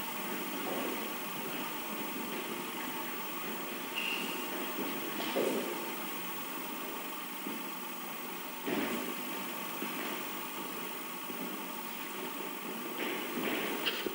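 Steady hum of background room noise in a sports hall, with no ball being played. A few faint knocks and a brief high tone about four seconds in.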